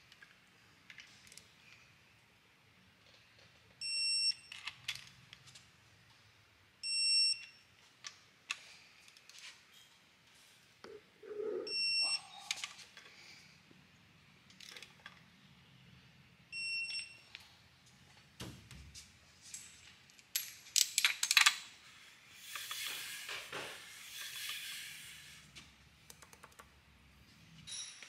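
Electronic torque wrench beeping four times, short beeps a few seconds apart, each signalling that a main cap bolt has reached its set torque. Near the end, a run of sharp metal clicks and rattling.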